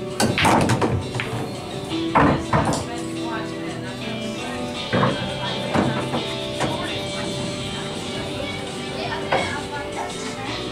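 Billiard balls struck with a cue and clacking together in a quick cluster of knocks in the first second, with a few more single knocks later, over steady background music.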